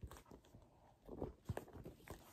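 Faint handling noise of a quilted leather handbag being turned over, with a few light clicks from its metal chain strap.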